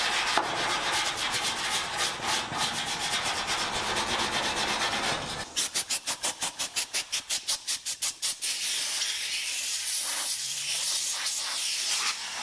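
Small hand wire brush scrubbing rust off a steel garage wall panel, a dense scratchy scraping. About halfway through come a few seconds of quick, even pulses at about five a second, then a compressed-air blow gun hissing steadily near the end.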